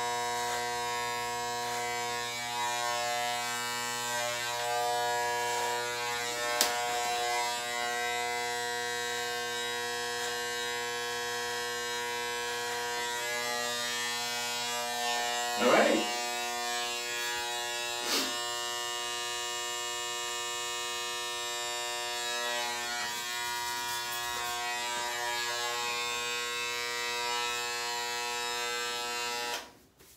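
Corded electric hair clippers running with a steady buzz while trimming hair, switched off just before the end. A short voice sound comes about halfway through.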